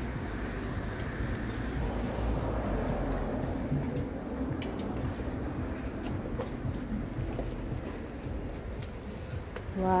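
Steady outdoor background noise: a low rumble with a hiss over it, without clear events.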